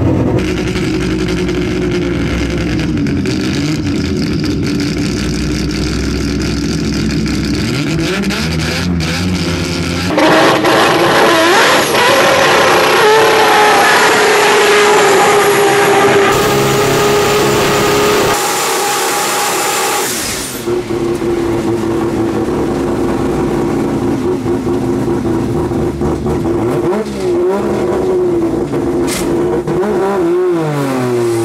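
Turbocharged 20B three-rotor rotary engine of a drag-racing car running loudly. About ten seconds in it jumps to hard, rising revs during a smoky burnout, and from about twenty seconds it holds a steady, high rev.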